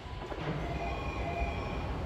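Electric commuter train moving at the station platform: a low rumble with faint whining tones over it.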